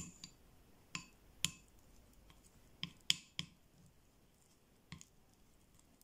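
Small plastic spoon clicking against a ceramic bowl while mashing soft cheese, about seven short, sharp clinks at irregular intervals.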